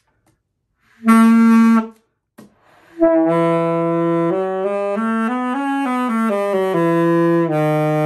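Alto saxophone played by a beginner on a first try: a short held note about a second in, then from about three seconds a slow run of notes stepping up and back down before settling on a low held note.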